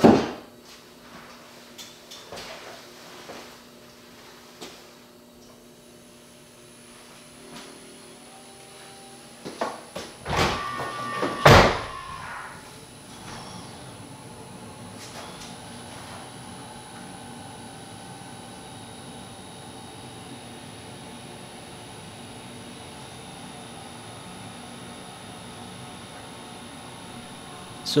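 Tesla Model Y charging from a NEMA 14-50 home outlet: a few loud clunks and clicks about ten to twelve seconds in, then a steady high-pitched whine over a lower hum that holds on. The whine comes while the car draws only 0 to 5 miles per hour of charge, which the owner takes for the car heating its batteries before charging at full rate.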